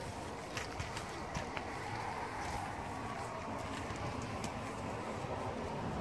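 Steady outdoor background noise with a few faint, light clicks.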